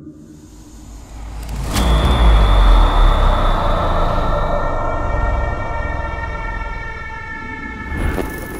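Title-card sound effect: a low rumble swells, a sharp hit with a deep boom lands just under two seconds in, then a held, droning tone slowly fades.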